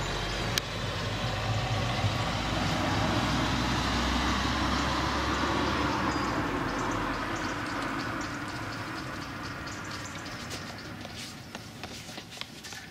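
Outdoor town noise coming in through an open window, led by a low engine rumble of passing traffic that swells over the first few seconds and fades away toward the end. A sharp click comes just after the start, and a few small clicks come near the end.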